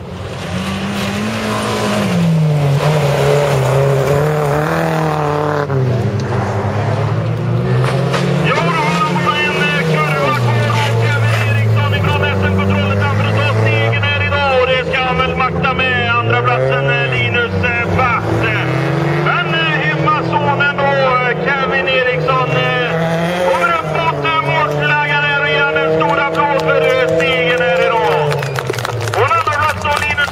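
Rallycross cars' engines running hard, the pitch climbing and dropping as the drivers rev and change gear through the corners. The sound gets louder about two seconds in and stays loud.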